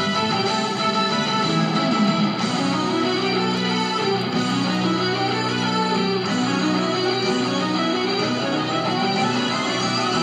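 Christmas music led by electric guitar, played steadily over a car radio from the light show's FM broadcast.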